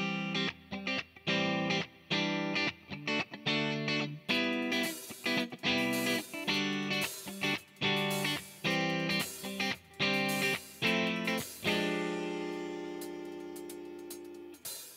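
Electric guitar playing short, rhythmic chords through effects, the tone getting brighter about four seconds in. Near the end a last chord is held and rings out, slowly fading.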